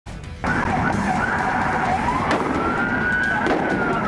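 Police car siren wailing, its pitch sweeping up and down, over car and road noise. Two brief sharp clicks come about a second apart midway through.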